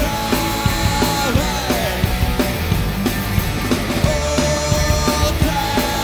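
Live punk rock band playing at full volume: distorted electric guitars, bass and a drum kit keeping a steady beat, with a man singing long held notes that slide down at the end of each phrase.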